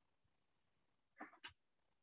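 Near silence: room tone, broken by two faint, brief sounds a little past the middle.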